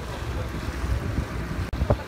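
Wind buffeting the microphone over the wash of lake water around a moving boat, a steady low rumble. Near the end the sound cuts out for an instant, followed by a sharp thump.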